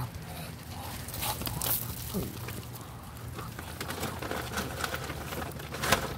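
A flock of Muscovy ducks feeding on food scattered over asphalt: scattered soft clicks and pattering from bills and feet on the pavement.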